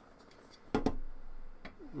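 Sheet-metal hard-drive bracket being handled: two sharp metal clicks in quick succession about a second in, then a fainter click.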